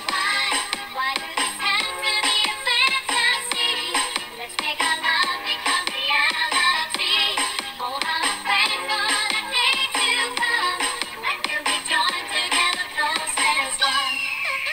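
Background music: a song with a sung vocal melody over steady accompaniment.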